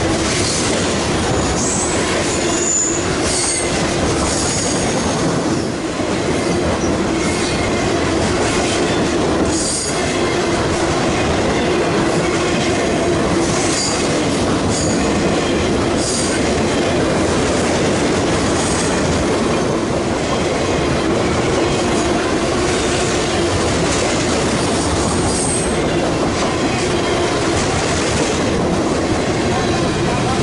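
Freight train cars rolling past close by: a loud, steady rumble of steel wheels on rail, with short high-pitched wheel squeals every few seconds.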